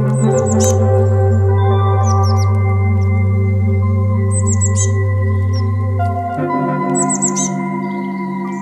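Slow ambient music of sustained organ-like synthesizer chords, the bass shifting to a new chord about six and a half seconds in. Over it, a small bird chirps in quick runs of three or four high notes, about every two seconds.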